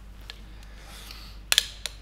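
A soft breath, then a few sharp clicks and knocks about a second and a half in, from the Vickers-Berthier light machine gun being shifted in gloved hands, over a steady low hum.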